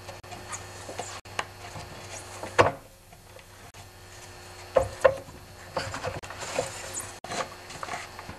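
Gloved hands working the rubber V-belt off the drive pulley of a Stihl TS420 cut-off saw: rubbing and scuffing, with a few sharp knocks, the loudest about two and a half seconds in and again about five seconds in.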